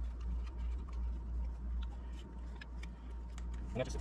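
Faint scattered clicks and rubbing as a camera cable and its rubber seal piece are handled and the cable is worked through the rubber, over a steady low hum.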